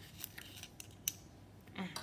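Metal spatula stirring and scraping crystalline powder (MSG mixed with sugar) inside a small glass vial: faint, irregular scratchy clicks and clinks of metal against glass.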